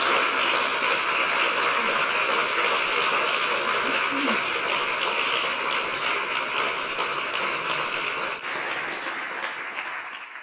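Audience applauding, many hands clapping at once in a steady stream, thinning out and dying away over the last second or two.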